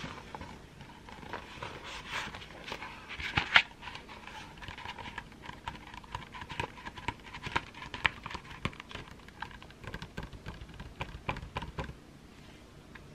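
Fingertips tapping and scratching on the paper page of a picture book: many quick, light taps, with one louder knock about three and a half seconds in.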